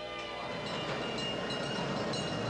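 A train running past, its steady noise swelling about half a second in, with faint sustained music tones underneath.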